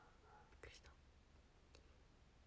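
Near silence: room tone, with one faint short breathy mouth sound a little over half a second in and a faint click near the end.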